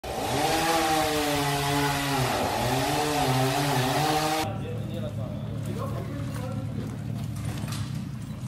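Engine noise with a wavering pitch over a heavy hiss. About four and a half seconds in it cuts abruptly to a quieter, steady low engine hum.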